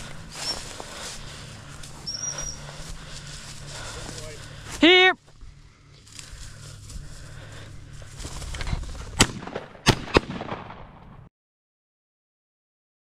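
Shotgun firing three shots at flushed birds: one, then two close together about half a second later. Dry grass swishes underfoot throughout.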